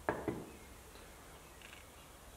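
Two short clicks from pressing the push-and-turn control knob on an Oerlikon Citosteel 325C Pro welder's front panel to confirm a menu choice, about a quarter second apart, the first louder. Faint room tone follows.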